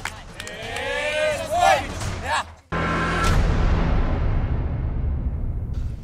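People's voices calling out for about two seconds, then, after a brief gap, a sudden loud boom-like TV sound effect with a falling whoosh that swells and slowly fades: an edited transition sting.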